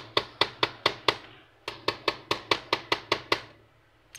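Rapid, evenly spaced sharp taps of a hand tool on the hard plastic of an HP 53A toner cartridge part, about four or five a second, with a short break just after a second in and stopping shortly before the end.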